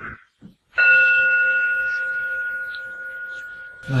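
A bell struck once, about a second in, ringing on a steady, clear tone that slowly fades.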